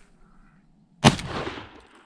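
A single shotgun blast about a second in, with a short fading tail of echo.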